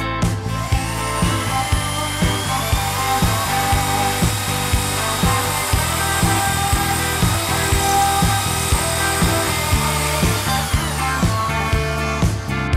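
Corded electric drill drilling into a wall: its motor whine rises as it spins up about half a second in, holds steady, and winds down near the end. Background music with a steady beat plays throughout.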